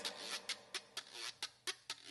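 Hand claps and bongo strokes in a gap in the singing: quiet, sharp strikes at roughly four a second.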